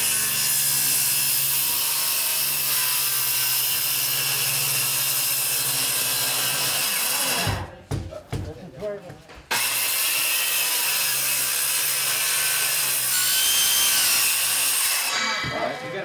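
Handheld circular saw cutting through old wooden floorboards, loud, with a steady motor whine. It runs for about seven seconds, stops for a couple of seconds, then cuts again for about five seconds before shutting off near the end.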